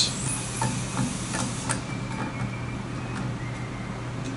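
A few light, scattered clicks of a hex key and small screws being handled on a lathe bed as the bed-to-base screws come out, over a steady low hum.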